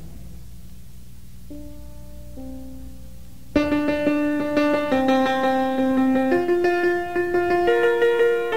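Piano opening of a song: a few quiet notes about a second and a half in over a low hum, then full chords come in loudly about three and a half seconds in and carry on, changing every second or so.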